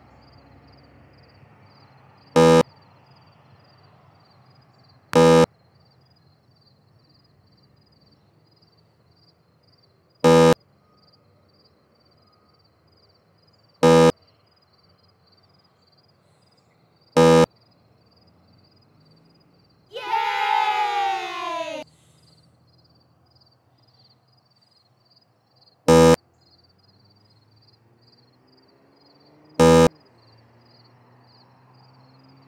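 Seven short, loud electronic beeps at irregular intervals. About two-thirds of the way through, a separate call of about two seconds slides down in pitch. A faint, evenly pulsing high tone runs underneath.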